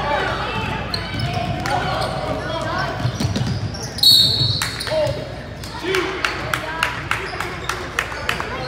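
Basketball game in a reverberant gym: a ball bouncing on the hardwood floor amid shouting voices. About four seconds in, a referee's whistle gives one short shrill blast, the loudest sound, and after it a ball bounces in a steady rhythm.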